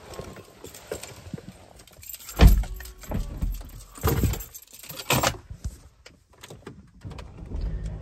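Handling noise of someone getting into a car: clicks, rustles and knocks, with a heavy thump about two and a half seconds in and a few more knocks over the next three seconds.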